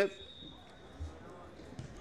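Faint ambience from the football pitch, with a thin steady high whine and a dull low thump about a second in.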